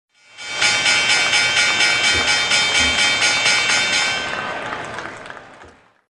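Synthesized logo sting: a bright, sustained chord with an even pulsing shimmer of about four beats a second. It swells in about half a second in and fades out over the last two seconds.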